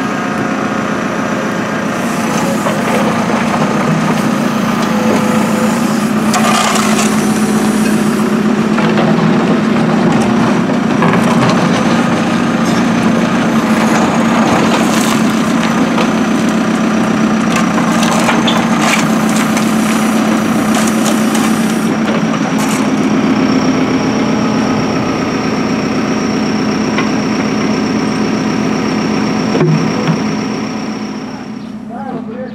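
Backhoe loader's diesel engine running steadily under load, with irregular scraping, crunching and clattering as its bucket digs into soil and dumps broken asphalt and stones.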